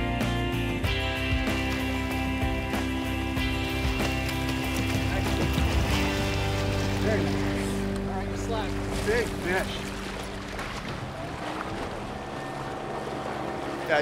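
Background music of long held notes plays over wind and water noise from an open boat on choppy water. The music fades out about ten seconds in, leaving the wind and water.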